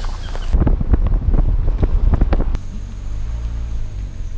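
Wind buffeting the microphone of a camera held out of a moving car's window, a loud, gusty low rumble. After about two and a half seconds it gives way to the steadier low hum of a car driving, heard from inside.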